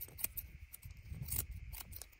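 Barber's steel scissors snipping hair lifted over a comb: about four quick, irregular snips, the loudest a little under a second and a half in, over a low rumble.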